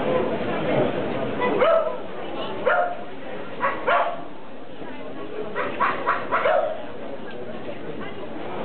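A dog barking in short, sharp barks, single ones spaced out at first and then several in quick succession, over background chatter.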